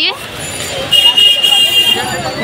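Busy street-market background of voices and traffic, with a high-pitched horn held steady for about a second from about halfway through.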